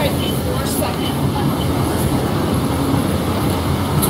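Steady low rumble of vehicle traffic close by, loud and even throughout.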